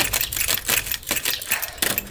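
Curved saw blade sawing back and forth through a taut rope: a dense, irregular run of rapid rasping clicks.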